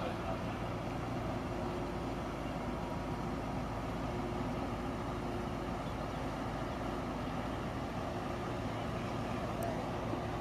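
Steady low engine drone of a passing river cruise ship, with a faint constant hum running through it.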